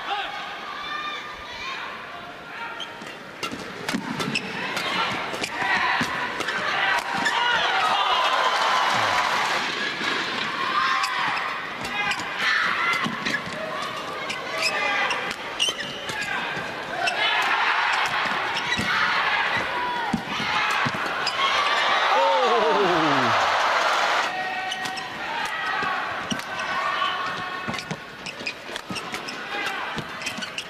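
Badminton rackets striking a shuttlecock again and again in a long, fast rally, sharp hits one after another. The arena crowd shouts over the rally, loudest past the middle.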